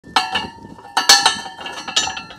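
Manual rebar bender's steel head clanking against rebar as it is fitted over the bars and levered to bend J-hooks: a series of ringing metal clinks, the loudest cluster about a second in.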